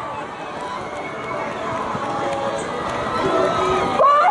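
A crowd of students' voices mingling in open air, a steady jumble of overlapping chatter with no single clear speaker.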